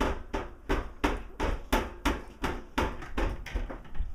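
Rapid, evenly spaced knocking on a hard surface, about three knocks a second, going on throughout.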